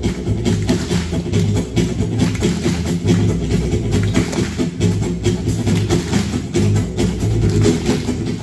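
Live music from a small acoustic band: acoustic guitar over a steady percussive beat, with low notes moving underneath.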